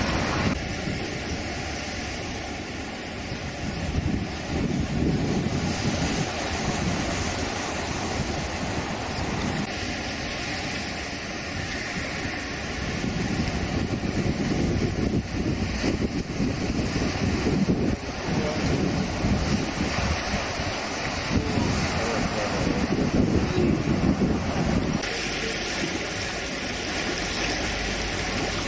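Sea waves washing and breaking around rocks on the shore, surging and falling back every few seconds, with wind buffeting the microphone.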